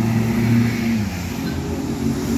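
Street traffic with a motor vehicle's engine hum, strongest in the first second and easing off after it, picked up by a smartphone's built-in microphone while it records video.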